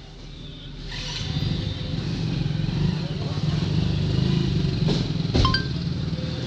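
An engine runs steadily with a low, even hum that swells over the first couple of seconds and then holds. A few clicks and a short electronic beep come near the end.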